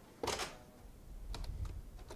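A few slow, separate computer keyboard keystrokes as clicks in the second half, after a brief, louder rush of noise about a quarter second in.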